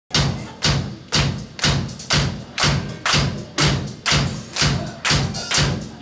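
Live drum kit playing a steady beat of about two strikes a second, twelve in all, each a low thump with a bright cymbal-like hiss that dies away before the next. It is the drum intro, just before the rest of the band comes in.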